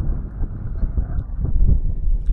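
Wind buffeting the microphone: a heavy, uneven rumble.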